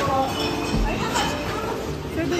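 Returned glass bottles and cans clinking against each other as they are sorted at a bottle-depot counter, under voices and background music.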